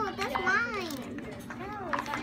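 Young children talking and babbling while they play, their high voices rising and falling in pitch.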